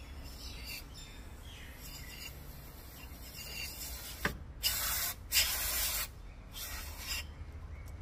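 Aerosol throttle body and mass airflow cleaner sprayed onto an engine sensor in short hissing bursts. The first sprays are faint, then three louder bursts follow in the second half.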